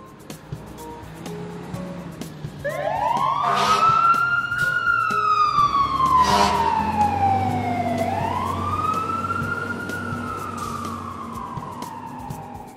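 Wailing emergency-vehicle siren that starts about three seconds in, its pitch rising and falling slowly twice, over soft background music.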